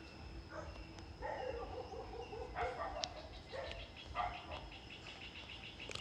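Faint animal calls in the background: a few short pitched calls between about one and four seconds in, with a brief click near the three-second mark.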